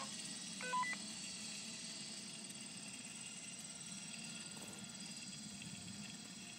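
A short two-note electronic beep a little under a second in, over a faint steady background hiss.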